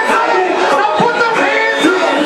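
Loud live music through a club sound system, with a man's voice singing or shouting over it on the microphone.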